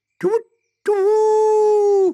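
A man's voice imitating a male owl's hoot: a short "hoo", a brief pause, then one long, steady "hoooo".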